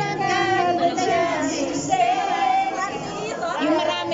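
A group of women singing a song together, their voices holding long wavering notes, with some talking mixed in.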